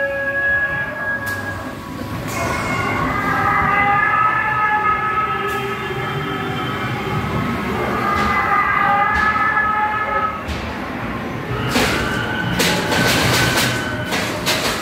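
Ghost train ride soundtrack: long held electronic wailing tones that change pitch a few times, over the low rumble of the ride car on its track. Near the end comes a quick run of sharp rattling knocks.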